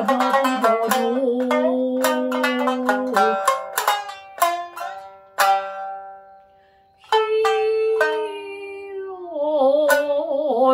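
Shamisen plucked with a bachi: sharp struck notes that ring out, under a woman's long held nagauta singing in the first three seconds. Around the middle the playing thins to a single note left to fade. Plucking resumes about seven seconds in, and the wavering sung line returns near the end.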